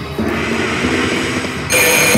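Double Blessings penny slot machine playing its electronic music while the reels spin, then, about one and a half seconds in, a sudden louder bright chime of steady tones as the reels stop on three double-happiness scatter symbols, triggering the bonus.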